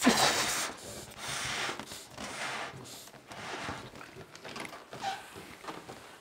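A person blowing up a rubber balloon by mouth: four or five breathy puffs of air forced into it, the first the loudest.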